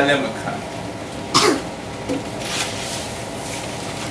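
A single short cough about a second and a half in, during a pause in a man's talk, with quiet room sound after it.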